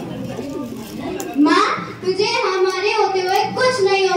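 Children's speech through a handheld microphone: a child's voice talking, louder from about a second and a half in.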